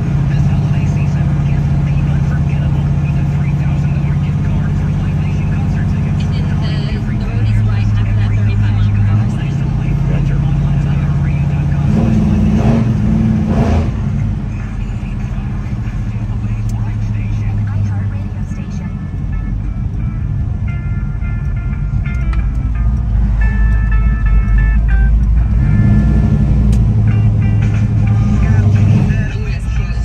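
Music with a steady bass line plays inside the cabin of a 1970 Chevelle SS 454 on the move, over the running of its 454 big-block V8 and low road rumble. The engine is just coming up to temperature, and the rumble grows louder in the second half.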